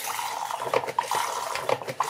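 Running water: a steady rushing noise with a few small clicks.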